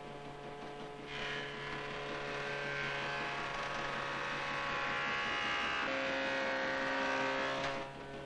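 A woodworking milling machine (fræs) cutting into a wooden chair seat. Over a steady motor hum, a cutting whine builds from about a second in and stops abruptly just before the end.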